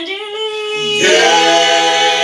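Small mixed-voice group singing a cappella: one voice holds a note, then about a second in the others come in together on a sustained chord in several parts, with a low bass line beneath.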